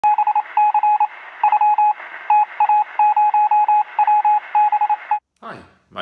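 Morse-code-style signal: a single loud beep keyed on and off in short and long pulses over a radio-like hiss. It stops shortly before the end.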